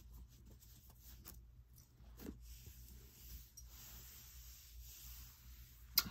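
Faint rustling and light ticking of paper cards being handled, and a small deck of hand-made cards set down on carpet; the rustling grows into a soft steady hiss about halfway through.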